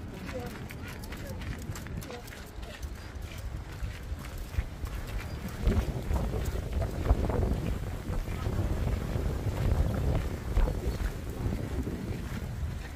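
Outdoor walking sound: wind buffeting the microphone as a steady low rumble, footsteps on a path in the first few seconds, and indistinct voices in the background that grow a little louder from about halfway through.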